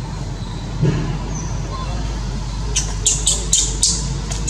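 A young macaque's short high-pitched squeaks, starting near three seconds and repeating two or three times a second, over a steady low rumble.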